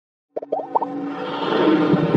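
Intro jingle sound effects: after a brief silence, a quick run of short rising plops, then a swelling musical sound that builds toward the end.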